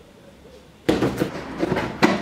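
A knife slitting the packing tape on a cardboard box: a sudden, dense crackle of short ticks that starts about a second in, after a quiet moment.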